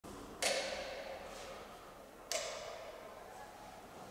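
Two sharp knocks, about two seconds apart, each leaving a ringing echo that dies away in the stone church interior.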